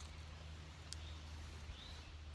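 Quiet outdoor background: a steady low hum, a faint short bird chirp near the start and again near the end, and one soft click about a second in.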